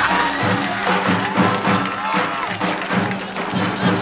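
Traditional Albanian folk music: a lodra, the large double-headed drum, beaten in a steady rhythm of strokes, under a high melody of held notes that bend in pitch.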